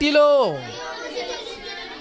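A man preaching into a microphone: one drawn-out word falling in pitch over the first half-second or so, then a short pause with only the hall's faint background.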